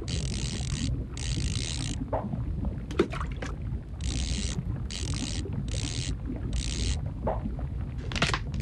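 Baitcasting reel being cranked in short bursts, a whirring of its gears about half a second to a second at a time, six times with short pauses, over a low steady underwater rumble.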